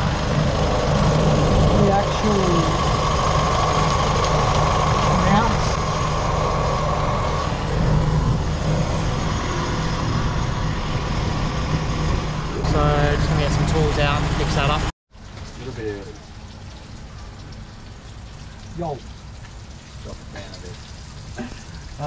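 A vehicle engine idling, loud and steady, heard from underneath the vehicle. It cuts off suddenly about 15 seconds in, giving way to a much quieter background with a few faint voices.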